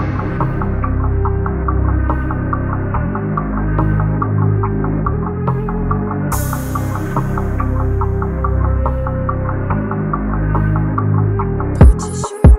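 Dark trap beat instrumental at 142 BPM, in a muffled intro with little treble: low droning bass notes that shift in pitch under a steady tick about five times a second. A rushing noise sweep comes in about six seconds in, and near the end the full beat drops in with hard drum hits.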